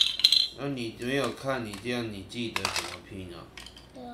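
Hard plastic Duplo-style building bricks clattering and clicking as they are handled and pressed together, loudest at the very start and again about two and a half seconds in, with a wordless voice in between.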